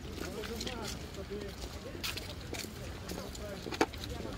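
Indistinct chatter of a group of people walking outdoors, with their footsteps on a paved path as scattered short clicks and one sharp tap near the end.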